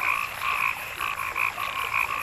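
A steady chorus of animal calls: short calls repeating about four times a second at two pitches, one higher and one lower.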